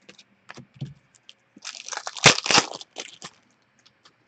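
Hockey trading cards and their wrapping being handled: a few light clicks, then from about a second and a half in a couple of seconds of crinkly rustling and cracking.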